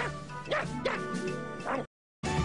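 A cartoon dog barking and yipping about four times, short rising yelps, over background music; the sound cuts off suddenly just before the end.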